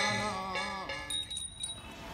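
Devotional chant singing over a steady held note, fading out about a second in. A short, faint, high ringing follows.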